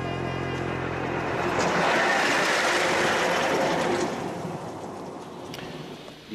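A small motor railcar passing close by on the track. A steady engine drone comes first, then a loud rush of wheel-on-rail noise as it goes past, loudest from about two to four seconds in, dying away after.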